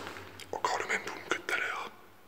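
A person whispering a few quick words.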